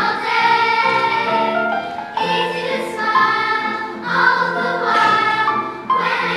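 Children's choir singing in unison, accompanied on an electronic keyboard, in sustained phrases with a short breath about two seconds in.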